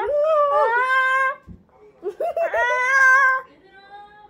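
A child wailing and whining in two long, high, wavering cries, the second starting about two seconds in.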